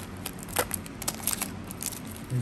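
Paper wrapper of a 1990 Score NFL trading-card pack crinkling and crackling as it is peeled open by hand: a run of short, sharp crackles, the loudest a little over half a second in.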